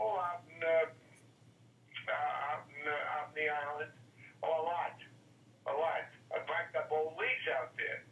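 Speech only: a man's voice over a telephone line, thin and cut off in the highs, talking in short phrases with pauses, over a faint steady hum.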